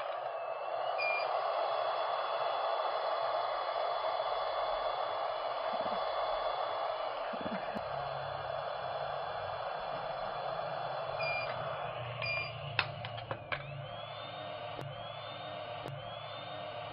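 A handheld LED dental curing light runs with a steady hiss while it cures freshly applied denture resin. It gives a short beep about a second in and two more about ten seconds later, then a few sharp clicks follow.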